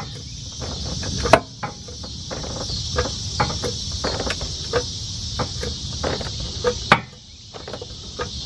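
Jack being worked to raise a boat off its trailer bunks: a string of light clicks and knocks, two or three a second, with a louder knock about a second in and another near the seven-second mark.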